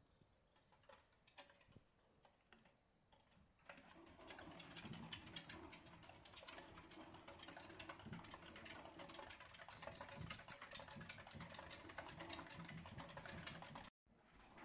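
Faint clicking and scratching of pet degus moving about on wooden boards, starting about four seconds in and cutting off abruptly near the end.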